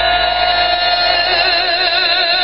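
A male singer holding one long note with steady vibrato over live band accompaniment, the close of a sung run in a Serbian folk song.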